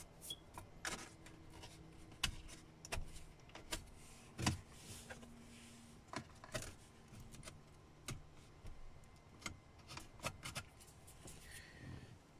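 Plastic interior trim panel being handled and pressed back into place on the console: a scattered series of light clicks and knocks, over a faint steady hum.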